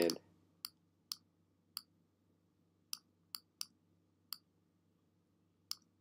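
Computer mouse clicking about eight times at irregular intervals, short sharp clicks against a faint steady background hum.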